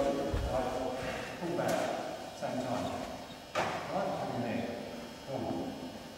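Two karateka grappling in a large hall: a low thud just after the start, then two sharp smacks about two seconds apart, with indistinct talk between them.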